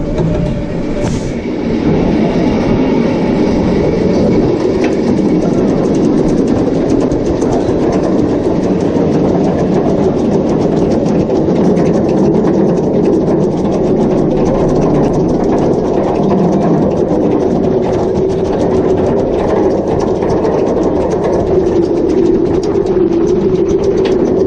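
Bolliger & Mabillard wing coaster train being hauled up the chain lift hill: a steady mechanical rumble of the lift chain with rapid, continuous clicking of the anti-rollback ratchet.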